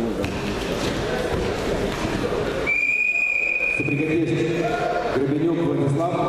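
A referee's whistle blown once in a large hall: a single steady high note lasting about a second, midway through. Hall crowd noise comes before it, and voices after it.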